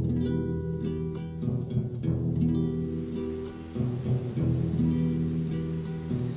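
Instrumental music, the opening bars of a French song before the singing starts: plucked string notes over sustained low chords.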